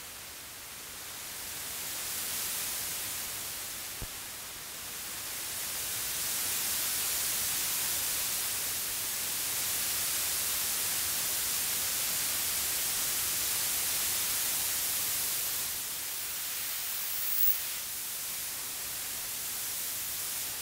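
Minimoog synthesizer sounding a noise patch: a hiss of filtered noise with no clear pitch that swells in over the first few seconds, holds steady, then falls back a little near the end. A small click about four seconds in.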